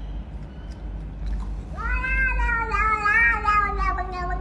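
A cat giving one long, drawn-out meow that begins just before halfway through and wavers slightly in pitch.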